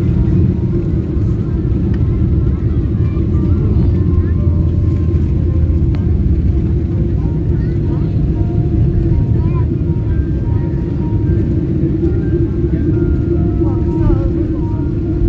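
Steady, loud low rumble of a jet airliner heard from inside the cabin as it rolls down the runway after touchdown, braking with its spoilers raised. Faint music and voices sound underneath.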